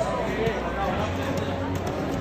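Overlapping chatter of many voices in a large hall, steady throughout, with no single voice standing out.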